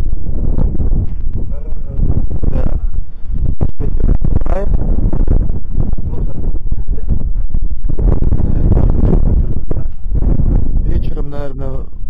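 Wind buffeting the camera microphone, a loud, constant low rumble. Snatches of a voice break through it several times.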